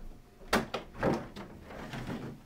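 Hard plastic sidewall of a collapsible bulk container being released and folded down: a sharp click about half a second in, then a few clattering plastic knocks.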